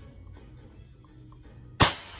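A single shot from a Bocap FX PCP air rifle, a sharp report with a short ringing tail, near the end.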